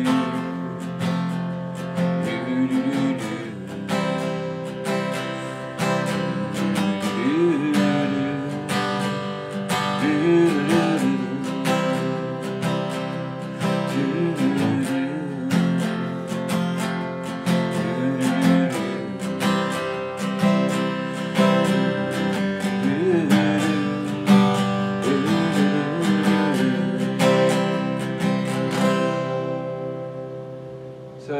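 Acoustic guitar strummed in a quick, steady rhythm, moving through C, F and G chords. The strumming fades away just before the end.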